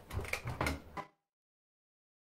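Front-loading washing machine door being pushed shut: a few knocks and clicks within the first second, then the sound cuts off abruptly.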